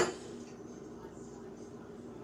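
A single sharp knock or clink right at the start, then a steady low hum.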